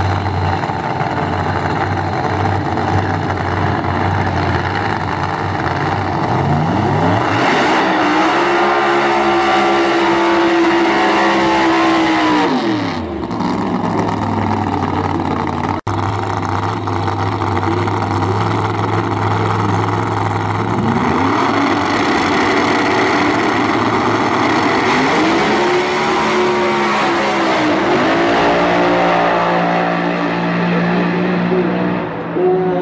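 Two V8 drag-racing cars idling with a steady low note, then revving up about 7 seconds in and holding high revs for several seconds before dropping back. After a sudden break they idle again and rev up twice more as they launch down the strip, loud throughout.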